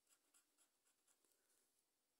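Very faint scratching of a scratch-off lottery ticket's coating: a quick run of short scrape strokes that thin out and stop shortly before the end.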